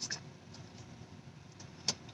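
Faint chewing of a crispy fried chicken sandwich, with a single sharp click just before the end.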